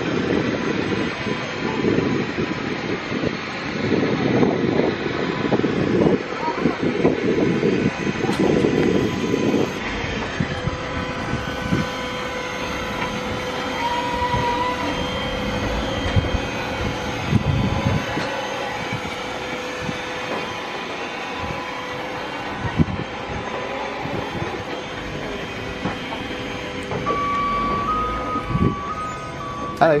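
Airport ramp noise beside a parked jet airliner: a steady mechanical hum with a constant whine, and wind buffeting the microphone for about the first ten seconds.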